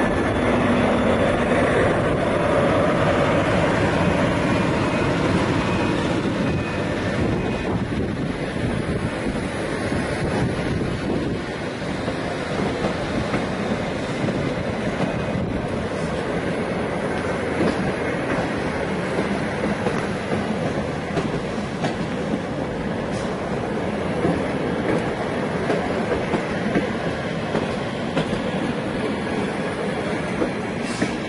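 SU42 diesel shunting locomotive running as it passes close by, loudest for the first few seconds. It is followed by a rake of passenger coaches rolling past, their wheels clattering on the track.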